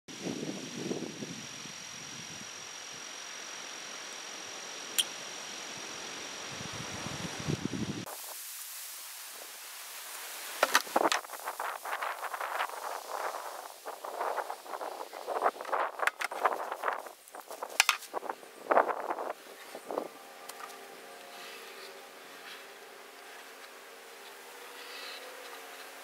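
Outdoor ambience with a steady high insect buzz for the first several seconds, then a run of short, quick scratching strokes of a marker pen drawing on the top of a plastic barrel, followed by a faint steady hum.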